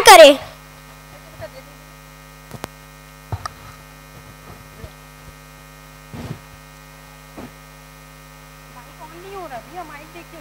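Steady electrical mains hum from the stage sound system. A loud voice cuts off just after the start, a few faint knocks come through at scattered moments, and a faint voice returns near the end.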